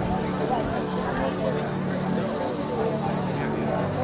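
Outdoor background of faint, indistinct voices over a steady low drone.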